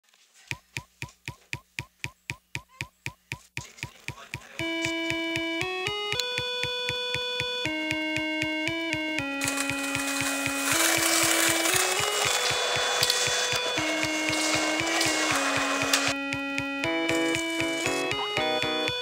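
Background music track: a steady clicking beat, about four clicks a second, then a louder melody of held notes comes in about four and a half seconds in, with a hissing wash joining around the middle.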